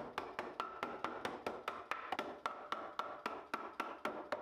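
A mallet tapping cedar boards to seat the glued joints of a stool in their dados, with quick, even knocks about four a second.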